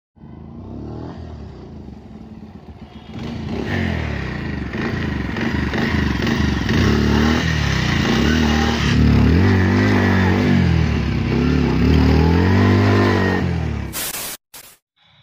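Bajaj Pulsar 150's single-cylinder engine running as the bike is ridden, then revved in several blips close to the exhaust, its pitch rising and falling repeatedly in the second half.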